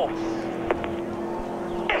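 NASCAR Cup race car's V8 engine running with a steady drone as the car rolls on after its qualifying lap, with one brief click about two-thirds of a second in.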